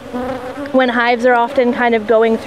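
Honeybees buzzing close to the microphone at an opened hive: a steady hum whose pitch wavers and bends as they fly about.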